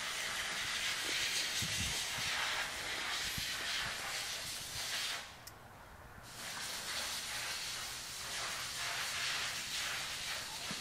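A steady hiss that drops away for about a second around the middle, with a few faint low knocks near the start.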